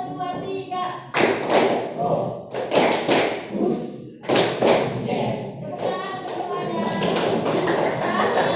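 A class of students playing a call-and-response clapping game: after a woman's call, the group claps in quick strokes and shouts the responses together, in several loud rounds about a second and a half apart.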